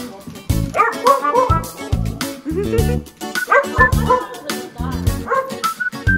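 Small dogs barking and yipping in play, in short bursts around a second in and again midway, over background music with a steady beat.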